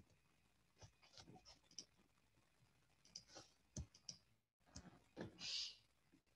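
Near silence: room tone with a few faint, scattered clicks, and a brief soft hiss about five and a half seconds in.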